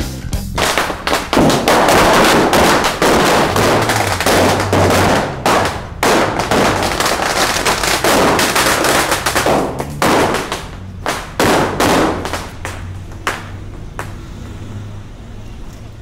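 Firecrackers bursting in a rapid crackling volley, many bangs a second, thinning out toward the end, over background music.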